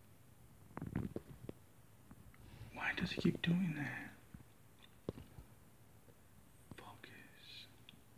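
A man's voice, low and half-whispered, muttering for about a second around three seconds in and again faintly near the end. There are a few light clicks in between.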